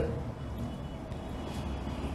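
A pause in speech: only a low, steady rumble of room noise picked up by the lecture microphone.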